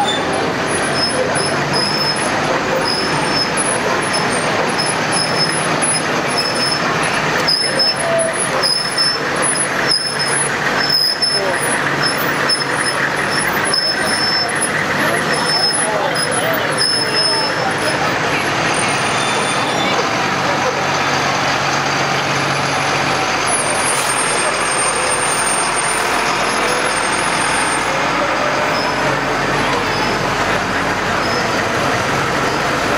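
Military Humvees and a military cargo truck driving slowly past in a parade, engines running steadily, over the continuous chatter of a sidewalk crowd.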